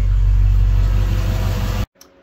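Engine idling steadily at about 700 rpm, heard from inside the cab, while its retrofitted Ford 3G alternator charges at 14.5 volts with a 560 ohm resistor on the exciter wire. The sound cuts off suddenly near the end.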